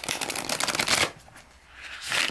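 Riffle shuffle of a new Dust II Onyx tarot deck with gilded edges, its cards still quite stiff: a rapid flurry of card edges flicking together for about the first second, then a soft swish near the end as the deck is pushed together and squared.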